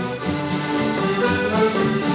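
Live folk dance band playing a lively dance tune, a pitched melody carried over a steady quick beat of about four pulses a second.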